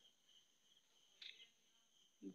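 Faint, steady, high chirring of crickets, with one short faint chirp a little over a second in.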